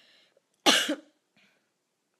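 A woman's single short, sharp burst of laughter from close to the microphone, about two-thirds of a second in, after a faint breathy exhale.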